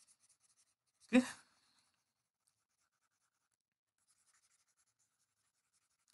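One spoken "okay", then near silence broken only by faint, sparse scratches of a stylus moving on a tablet screen.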